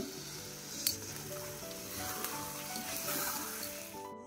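Sabudana and vegetables sizzling softly in a hot pan just after the gas is turned off, with a light click a little under a second in. A quiet background music melody plays underneath.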